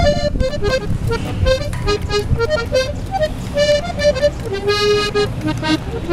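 Background accordion music: a quick melody of short, held notes over a low accompaniment.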